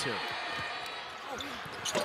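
A basketball dribbled a few times on a hardwood court over a low arena crowd murmur, with a sharper bounce just before the end.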